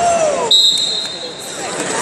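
A referee's whistle blown once, a shrill steady blast of about a second starting half a second in, marking the end of a freestyle wrestling bout. Just before it a voice shouts with a falling pitch.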